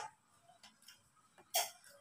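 Faint small clicks from people eating at a table, with one short, louder click about one and a half seconds in.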